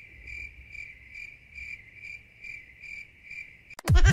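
Cricket chirping sound effect: a steady high trill pulsing a little over twice a second, stopping just before the end. It is the cartoon's awkward-silence gag.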